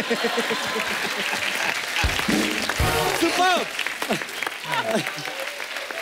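Studio audience applauding and cheering, with music playing under it and two low thumps about two and three seconds in.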